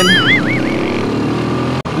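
Motorstar Z200X motorcycle engine running steadily under way, with road and wind noise. A wavering tone trails off in the first second, and the sound drops out for an instant near the end.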